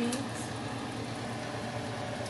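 A steady low hum with a faint even hiss, unchanging throughout, after a spoken word is cut off at the very start.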